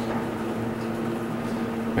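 Steady low electrical hum inside a Thyssenkrupp hydraulic elevator cab, one even drone with a few overtones.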